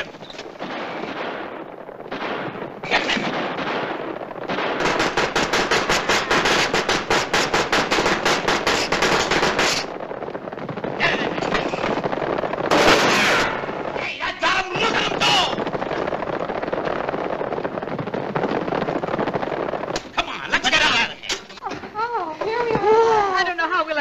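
Rapid machine-gun fire, a dense even rattle of about nine shots a second, from a hand-cranked meat grinder fed with an ammunition belt and used as a machine gun (a film sound effect). The longest burst runs about five seconds, with shorter bursts around it.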